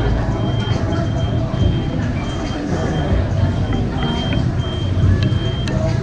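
Vehicle reversing alarm beeping, a short high beep about twice a second, over the low rumble of a running engine.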